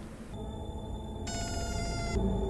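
Film soundtrack: sustained, eerie held tones that swell in loudness. A brighter high chord of many tones joins about halfway through.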